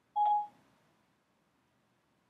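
Siri's single short electronic beep on an iPad running iOS 7, lasting about a third of a second just after the start. It is the tone that marks Siri has stopped listening to the spoken request and is processing it.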